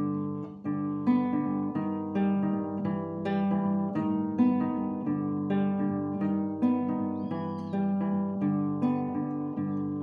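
Classical guitar played strongly (forte), a chord progression with a new chord or note struck about once a second and left ringing, demonstrating loud, high-intensity playing.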